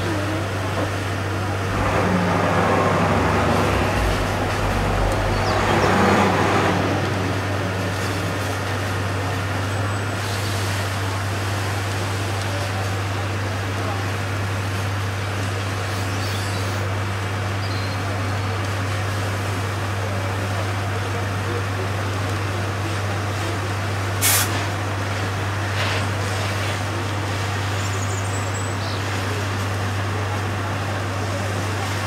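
Fire truck's engine running steadily: a low, even drone. A louder, noisier surge comes a couple of seconds in and lasts about five seconds, and a single sharp click comes about three-quarters of the way through.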